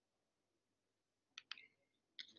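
Near silence with two faint, quick clicks about a second and a half in: the slide being advanced on the presentation computer.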